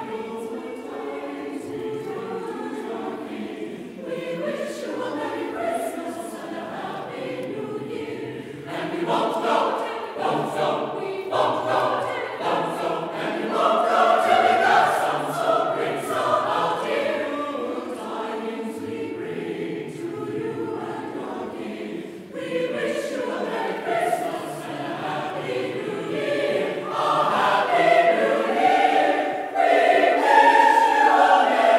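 Choir singing a choral piece, the voices swelling louder about halfway through and again near the end.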